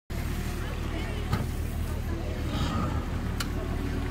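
Boat engine idling with a steady low hum, with voices in the background and two sharp clicks, one about a second and a half in and one about three and a half seconds in.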